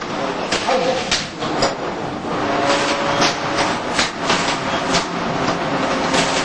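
A steady, busy noise bed broken by frequent short sharp clicks, roughly one or two a second, with faint voices underneath.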